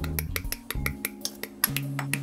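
Background music with held bass notes over a run of sharp, irregular clicks: side-cutter nippers snipping plastic model-kit parts off the runner.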